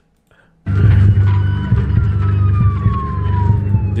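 Dramatic intro sound design: a deep, steady rumbling drone cuts in abruptly about half a second in, with a siren-like tone sliding slowly down in pitch over it.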